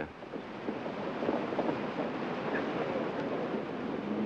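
A steady rushing noise with no distinct events.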